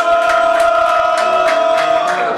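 A man's singing voice holds one long, high note through the whole stretch, while listeners clap along in time.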